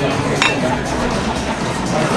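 One sharp clink of tableware about half a second in, with a short ringing tone, over the steady background din of a busy restaurant.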